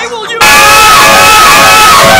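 A crowd of children shouting and cheering together, cutting in suddenly and very loud about half a second in.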